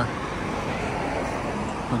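Steady city road-traffic noise, an even hum of passing cars with no single vehicle standing out.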